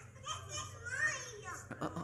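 Children's voices chattering and exclaiming, with a couple of sharp clicks near the end.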